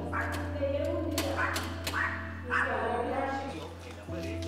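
A dog barking several times in short bursts, over a steady low hum.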